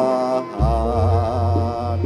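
Javanese gamelan accompaniment: a singer's wavering, ornamented vocal line ends about half a second in, and a deep gong stroke follows and rings on under sustained metallophone tones.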